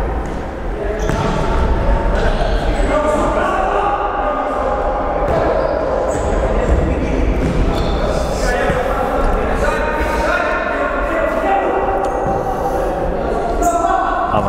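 Voices calling out across a large indoor sports hall, with the thuds of a futsal ball being kicked and bouncing on the court floor.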